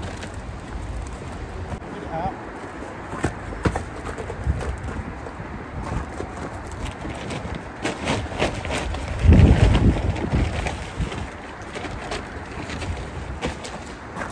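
Wind rumbling on the microphone outdoors, with scattered light knocks and clicks and a louder buffet about nine seconds in.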